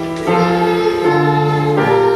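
A choir singing a hymn in long held notes, the chord changing a few times.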